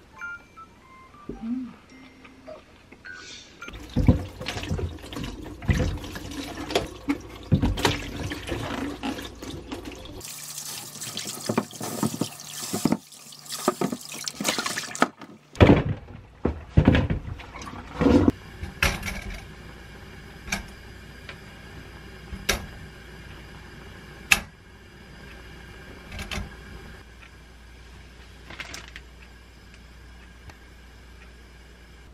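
Sweet potatoes being washed by hand in a plastic basin in a stainless-steel kitchen sink. A tap runs for about five seconds in the middle, with splashing and the knocks and clatter of the potatoes and basin before and after.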